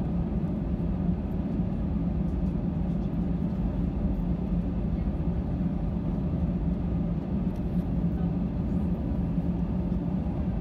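Airbus A320 cabin noise while taxiing: a steady engine drone with a constant low hum and rumble, unchanging throughout.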